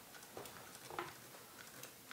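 Quiet room tone with a few faint clicks and taps, about half a second and a second in.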